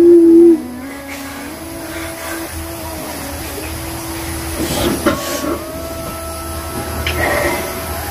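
A loud wailing cry that falls in pitch and breaks off about half a second in, followed by a quieter steady hiss carrying long held tones, with two short rushes of noise near the middle and near the end.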